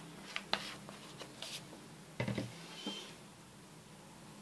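Quiet handling sounds of squeezing liquid latex from a plastic bottle and spreading it with a fingertip on a plastic sheet: a few light clicks and a short scratchy rub, then a dull knock about two seconds in.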